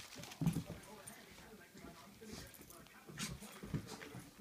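A Shih Tzu making short play noises as it worries a plush toy, with a few knocks and scuffles from the play.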